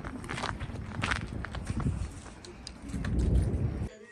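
Footsteps of a person walking while filming, heard as a series of short, irregular steps. A low rumble builds near the end and stops suddenly.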